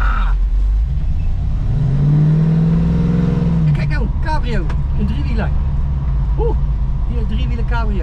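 1974 Dodge Challenger engine running, with a rev that rises and holds for about two seconds from around two seconds in, then drops back. Voices talk over the engine in the second half.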